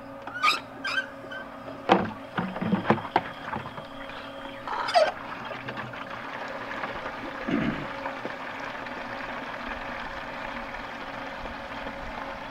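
Garden hose on city water pressure filling a plastic watering can: a steady rush of water that sets in about five seconds in and holds evenly. Before it, a few sharp knocks and clicks from handling.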